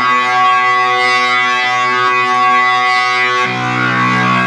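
Electronic organ played through distortion, with a guitar-like tone: a chord held steady for about three and a half seconds, then a change to a different chord with a heavier bass near the end.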